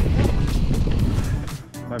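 Wind rumble on the bike-mounted microphone and tyre noise from a mountain bike rolling down a dirt trail, easing off sharply about three-quarters of the way in as the bike slows onto a smoother track. Background music with a steady beat plays underneath.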